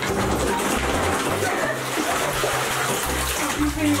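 Water splashing and sloshing in a bathtub as a person's legs move through it.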